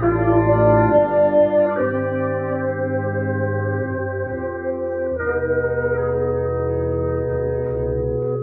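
Brass sextet with trumpets playing slow sustained chords over low bass notes, moving to a new chord about two seconds in and again about five seconds in.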